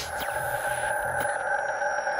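Electronic logo-sting sound design: a steady synthesized tone hangs on after a whoosh, with faint high gliding tones and a faint tick or two over it.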